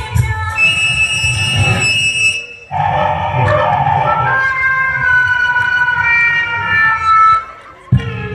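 Mime-act backing soundtrack played over the stage loudspeakers: a held high electronic tone, a short break, then sustained tones sliding slowly downward, siren-like, fading out near the end before the music resumes.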